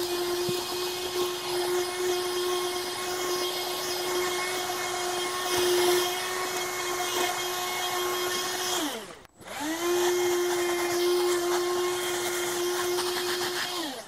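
MECO cordless handheld vacuum cleaner's motor running steadily with a high hum as it is worked over carpet. About nine seconds in it winds down to a stop, then spins up again and runs until it winds down near the end.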